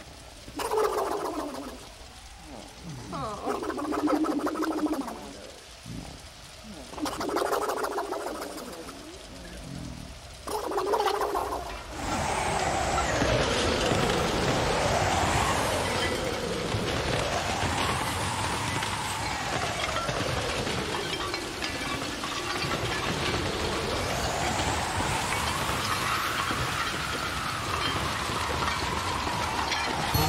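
Four short wordless vocal sounds in the first twelve seconds. Then, about twelve seconds in, a storm sound effect takes over: wind howling, its pitch slowly rising and falling, over a steady hiss of heavy rain.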